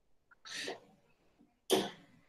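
A man coughing: a softer cough about half a second in, then a sharp, louder one near the end.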